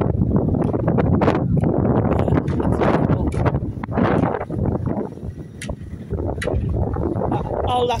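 Gusty wind buffeting the microphone: a loud rushing rumble that is heaviest for the first four or five seconds, then eases a little.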